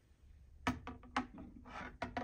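Steel AR-15 bolt carrier group handled and set down on a digital kitchen scale: a few light clicks and knocks of metal against the scale's platform, then a short scrape near the end.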